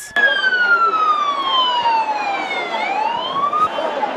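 Ambulance siren wailing: its pitch falls slowly for nearly three seconds, then rises again before breaking off near the end, over the noise of a crowd.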